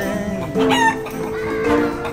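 Background music with steady sustained notes, and a chicken clucking briefly a little over half a second in.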